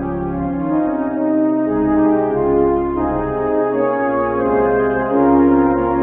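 Church organ playing slow, sustained chords over a held low pedal bass, the harmony shifting about once a second.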